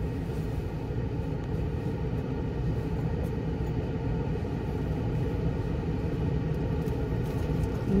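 Steady low rumble of a car idling, heard from inside the cabin with a window down.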